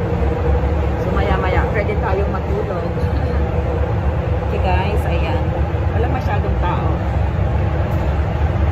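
Steady, loud low rumble inside a Toronto subway car on Line 1 as the train runs between stations.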